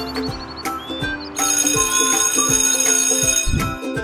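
Cheerful background music, with a bell ringing loudly from about a second and a half in for about two seconds, then a short low whoosh near the end.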